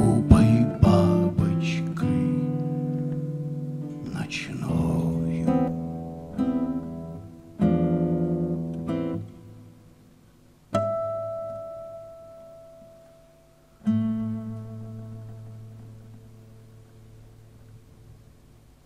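Acoustic guitar played solo, plucked and strummed chords closing a song. In the second half two last chords are struck, each left to ring and slowly fade.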